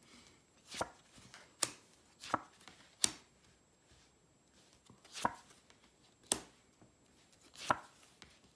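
Tarot cards being dealt and laid down on a wooden tabletop from a handheld deck: about seven sharp taps and clicks, irregularly spaced, with a pause of about two seconds midway.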